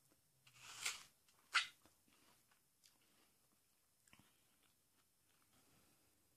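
A crisp bite into a green apple, crunching loudest about a second and a half in, then faint irregular chewing.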